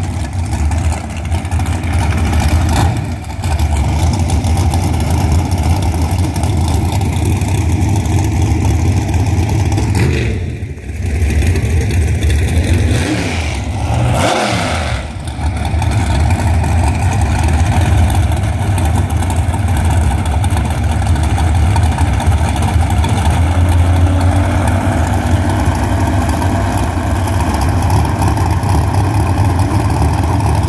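601-cubic-inch big-block Ford V8 of a bracket-racing dragster idling loudly at the starting line, with another dragster's engine running alongside. The sound dips briefly a few times, and a short rev rises and falls near the middle.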